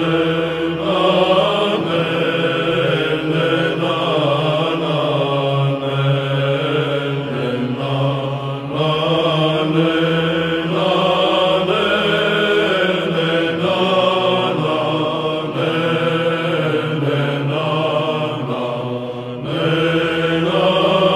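Byzantine chant in Tone 3: a male psaltic choir sings a long melismatic passage on wordless syllables ("te", "le", "la", "em") of a kalophonic heirmos. The ornamented melody moves above a steady held drone.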